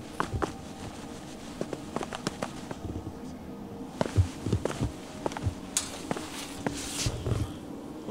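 Footsteps of boots walking down concrete steps, with irregular knocks and scuffs and the crackle of dry leaves underfoot.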